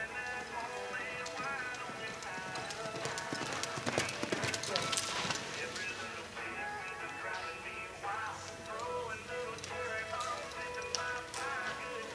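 A reining horse's hoofbeats and hooves scuffing on arena dirt, under background music. The hoof and dirt noise comes in a dense burst about four to five seconds in as the horse drives into a sliding stop.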